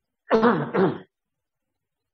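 A monk clearing his throat close to the microphone: two quick voiced rasps within under a second, about a quarter of a second in.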